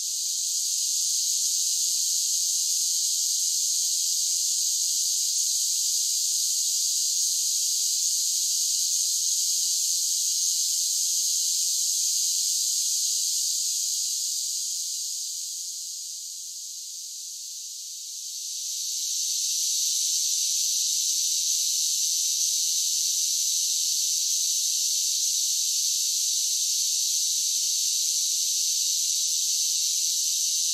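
Steady, high-pitched chorus of insects in tropical forest. It eases off for a few seconds past the middle, then swells back to full strength.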